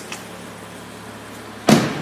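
A steady low hum, then a sudden loud clunk with a rustle near the end as the car's rear door is pulled open.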